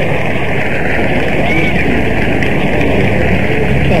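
Steady hubbub of a large cricket crowd, heard through an old, narrow-band radio broadcast recording, with no clear voice standing out.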